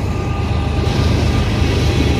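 Freight train passing close by: several diesel locomotives running in a loud, steady rumble, the last of them going by and the first covered hopper cars following.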